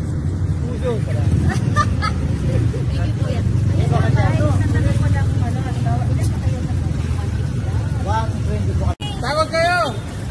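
Several people talking and chatting over a steady low rumble, with the sound cutting out for an instant near the end.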